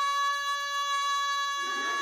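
A woman's singing voice holding one long, steady note in an unaccompanied folk-style song, with a new lower phrase starting near the end.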